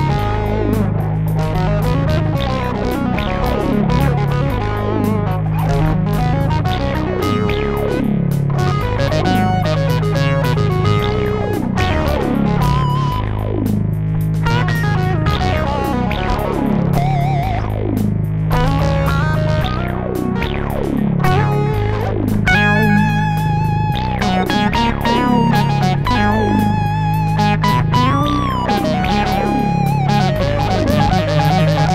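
Electric lead guitar played through a Korg Pandora PX5D over a looped metal rhythm-guitar and drum-beat backing recorded on its phrase trainer. Fast runs of notes, turning to long held notes with vibrato in the last third.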